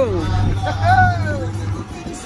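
A voice with a drawn-out, gliding pitch over music inside a moving car, with a steady low hum beneath it that stops near the end.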